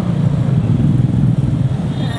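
Motor scooter engine running at low speed in traffic, a steady low drone heard from on the bike.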